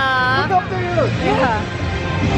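Parade float music with a sung voice gliding up and down, over crowd chatter and a low steady hum from the slow-moving float.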